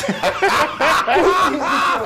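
A man laughing.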